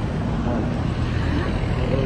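Wind buffeting a phone's microphone outdoors: a steady, choppy low rumble.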